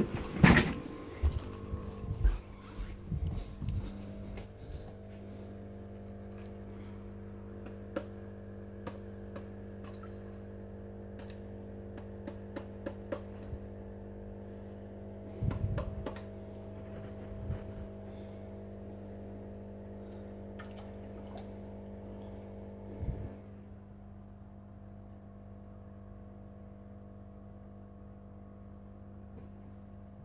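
Knocks and clatter from a small cup of snails being handled over the first few seconds, then a steady low electrical hum with a few scattered clicks; the hum drops in level about 23 seconds in.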